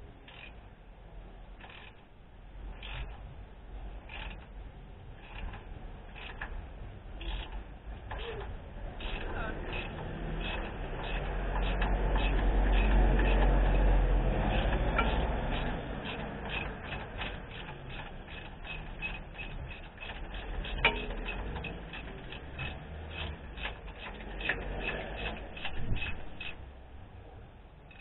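Socket ratchet clicking as it is swung back and forth to undo the thermostat housing bolts on a 1968 Dodge Charger engine. The ticks come about once a second at first and then several a second from about a third of the way in, with a low rumble loudest in the middle and one sharper click past the two-thirds mark.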